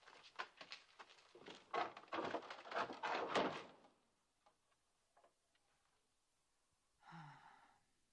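A flurry of knocks, thuds and rustling clatter, the loudest part, fitting bundles of provisions being gathered up and carried off, lasting about four seconds and then giving way to a few faint ticks. A short, low, voice-like sound comes near the end.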